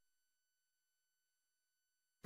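Near silence: a gap in the broadcast audio, with only an extremely faint steady high tone.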